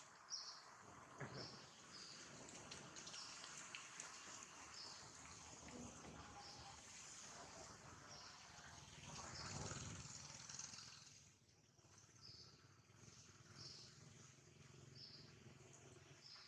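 Faint outdoor ambience: a short, high chirp repeats roughly once a second over a low, noisy rustle. The rustle swells in the middle and drops away about two-thirds of the way through.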